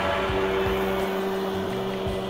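A man's voice imitating a jet ski engine: one long, steady hum held at a single pitch.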